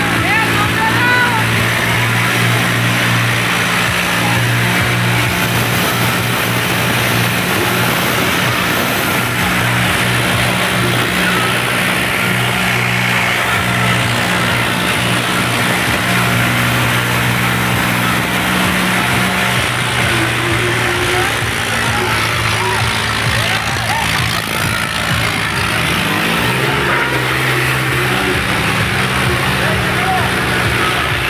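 Tractor diesel engine running steadily at high throttle, a low drone whose pitch shifts about two-thirds of the way through, over a crowd shouting and chattering.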